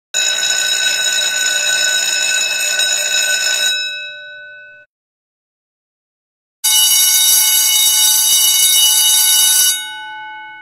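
A bell ringing loudly twice, each ring about three and a half seconds long. Its tone lingers and dies away for about a second after each ring stops.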